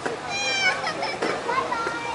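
Softball players shouting and calling to each other across the field, with one high-pitched call near the start and a short sharp knock just past a second in.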